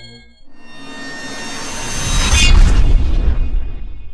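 Logo-intro sound effect: a rising whoosh that swells for about two seconds into a deep boom, then dies away.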